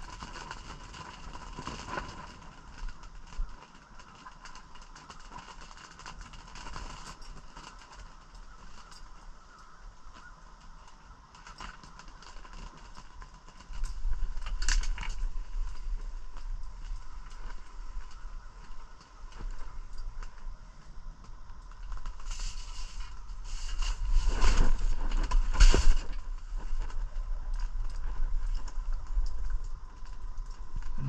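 Handling noise inside an ice-fishing shelter: rustles, light scrapes and clicks as two ice rods are held and jigged, over a faint steady hum and whine. From about 14 seconds in a low rumble sets in, and it is loudest around 24 to 26 seconds.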